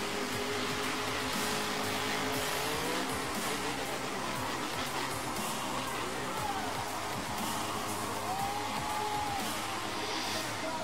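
Music playing over the noise of monster truck engines.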